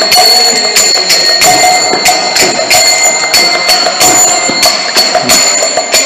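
Kirtan music without singing: small hand cymbals (karatalas) struck in a steady quick beat, about three clashes a second, each ringing with a bright metallic tone over a held drone.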